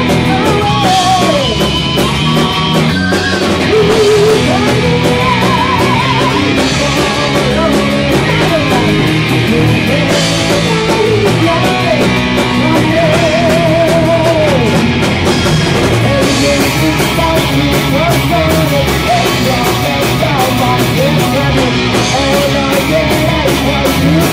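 Rock band playing a fast heavy-metal song live in a rehearsal room: distorted electric guitars, bass and drums, with a high, wavering lead melody over the top.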